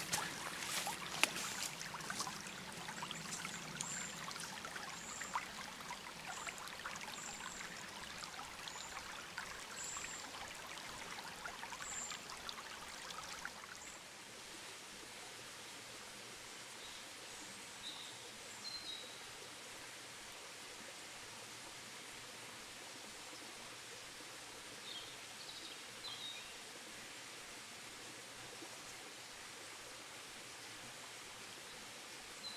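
Shallow woodland stream running over a moss-covered rocky bed, with small splashes and trickles. About halfway through it gives way to a quieter, steadier flow, with a few faint high chirps twice.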